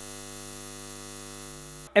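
Steady electrical hum of a neon-sign sound effect, a buzzing drone with many overtones, cutting off suddenly just before the end.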